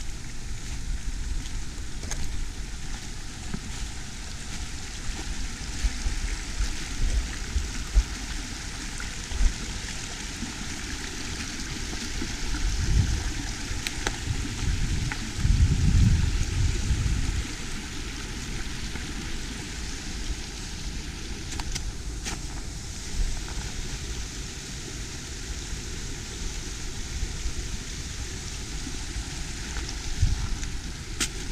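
Steady rushing of a small rocky woodland brook, with gusts of wind on the microphone, heaviest about halfway through.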